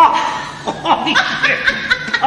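A woman and a man laughing together in short bursts, loudest at the start.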